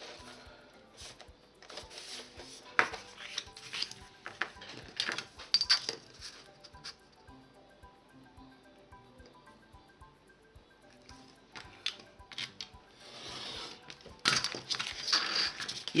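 Kraft cardstock and a metal ruler being handled on a cutting mat: scattered taps, clicks and paper sliding, with the ruler clinking. The middle stretch is quieter with faint background music, and near the end there is a longer, louder rustle of the card.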